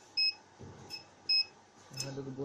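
Short, high electronic beeps: a loud one near the start, a faint one near the middle and another loud one past the middle.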